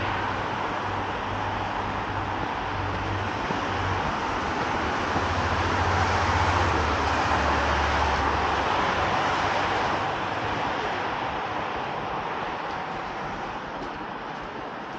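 Steady road traffic noise from a busy multi-lane road, swelling in the middle with a low engine drone before easing off near the end.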